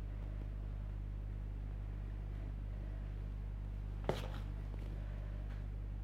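Room tone with a steady low hum, broken by one short click about four seconds in.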